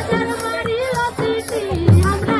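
Folk song with singing, a wavering melody of held and gliding notes, over low drum beats, the loudest beat near the end.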